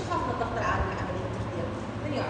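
A lecturer's voice speaking, over a steady low hum.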